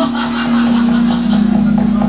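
Javanese gamelan music accompanying a wayang kulit shadow-puppet play, with one long held note that dips slightly in pitch partway through.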